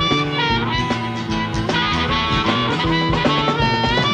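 Country-rock band playing an instrumental break with no vocals: a melodic lead line of held notes over a steady beat.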